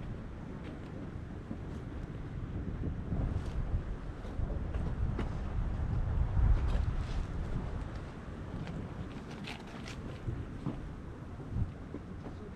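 Wind buffeting the camera microphone: a low, uneven rumble that swells to its loudest about halfway through, with a few faint ticks scattered over it.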